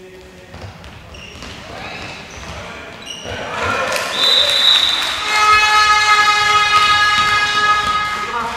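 Handball bouncing and shoes squeaking on a sports-hall floor, then a short shrill whistle blast about four seconds in as the crowd rises, followed by a spectator's horn holding one note for about three seconds over cheering.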